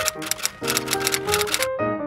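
A rapid run of typewriter keystrokes clattering over intro music with piano-like notes; the keystrokes stop shortly before the end.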